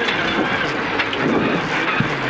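Rally car at speed on a gravel stage, heard inside the cabin: the engine note rises and falls under a dense hiss of tyre and stone noise.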